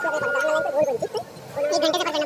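Several passengers' voices talking at once in a packed local train compartment.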